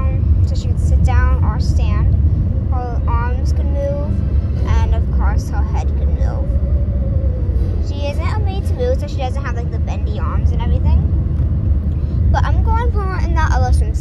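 Steady low rumble of road and engine noise inside a moving car's cabin, with a person talking over it.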